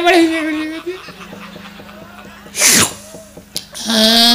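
A puppeteer's voice trails off in a drawn-out, pitched cry. About two-thirds of the way in comes one short, loud sneeze-like burst, and shortly after, a single sharp knock.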